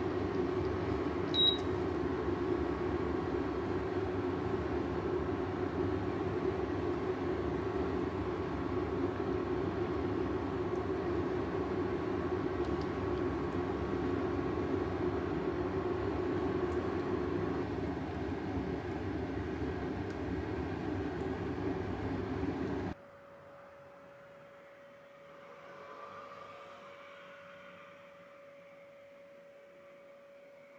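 A kitchen fan whirring steadily, with a faint whine that fades out around 17 seconds in. The whir cuts off abruptly about 23 seconds in, leaving only a faint hum. A short, high electronic beep sounds about a second and a half in.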